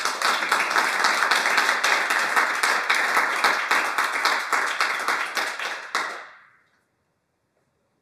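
Audience applauding, a dense patter of many hands clapping that dies away about six seconds in.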